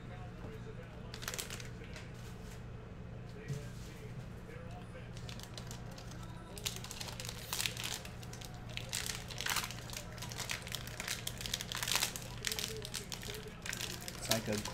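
Gold foil trading-card pack wrapper crinkling as it is handled and torn open, a run of short crackles that grows busier about halfway through.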